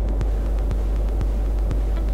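A steady low hum with faint, scattered soft ticks over it.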